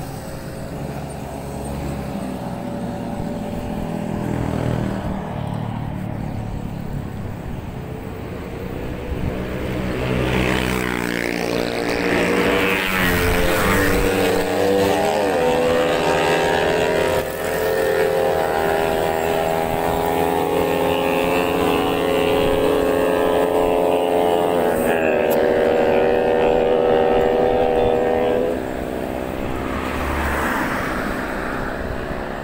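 Low wind rumble on the microphone of a moving bicycle. From about ten seconds in, a motor vehicle engine runs close by, its pitch slowly rising and falling, until it drops away near the end.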